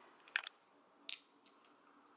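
Two brief soft clicks, about three quarters of a second apart, over quiet room tone.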